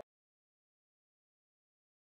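Digital silence: the soundtrack has ended.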